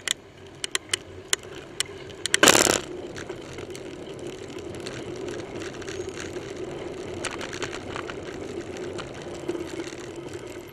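Bicycle riding through city traffic, heard on a bike-mounted camera: several sharp clicks in the first two seconds, a short loud rush of noise about two and a half seconds in, then steady road and traffic noise with a low hum.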